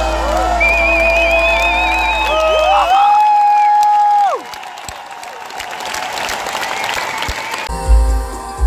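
A live pop-rock band ends a song on long held notes, one of them high and wavering, followed by an arena crowd cheering and applauding. Near the end the band comes in loudly with drums and guitars on the next song.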